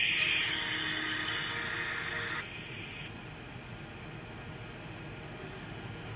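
A pause in the talk filled with steady hiss from the call or recording line, which drops to a fainter, even background noise about two and a half seconds in.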